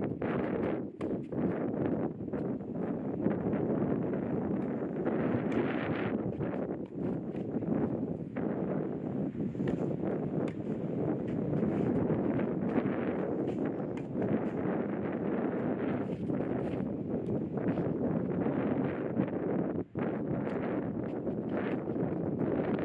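Wind buffeting the microphone, a steady rumbling noise, with many short knocks scattered through it.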